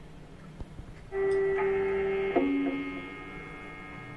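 Electric guitar through an amplifier over a steady amp hum. About a second in, a note sounds and holds for a little over a second. A lower note is then picked sharply and rings on, slowly fading.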